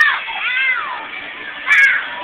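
Young children's high-pitched squeals whose pitch arches up and down: one at the start, a longer one about half a second in, and the loudest, sharpest one near the end.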